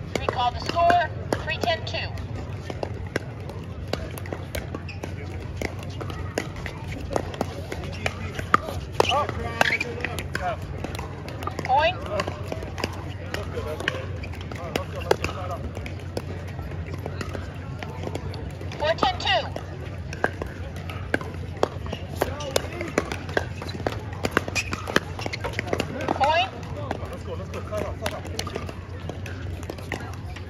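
Scattered sharp pops of pickleball paddles striking the plastic ball during play, over people talking in the background and a steady low hum.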